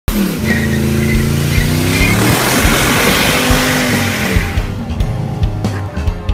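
A car's engine revving hard while its rear tyres spin and squeal in a burnout. The engine note rises and falls. About four and a half seconds in the burnout fades out and rock guitar music comes in.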